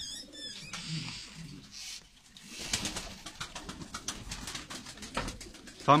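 Turkish tumbler pigeons cooing in their loft, low calls in the first second or so, followed by a stretch of quick clicking and rustling about halfway through.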